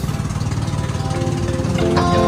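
Engine of a motorized outrigger boat (banca) running steadily at cruising speed, a rapid low throb. Background music comes back in over it about half a second in.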